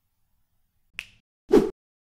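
Outro sound effect: a short, sharp click, then half a second later a louder snap-like pop.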